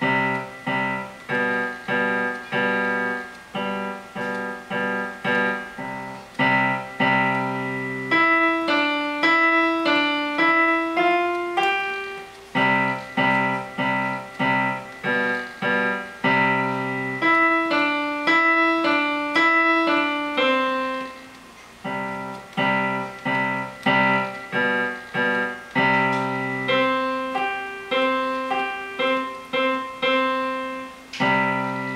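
Kawai digital piano played by a young beginner: a low chord struck over and over, about twice a second, in sections that alternate with a simple melody of single notes stepping up and down higher on the keyboard.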